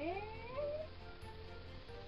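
A girl's voice drawing out a word in a rising, sing-song pitch, then faint steady background music.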